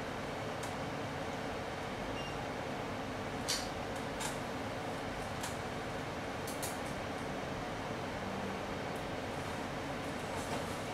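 Steady air-conditioning noise with a constant low hum, broken by a few faint sharp clicks between about three and a half and seven seconds in.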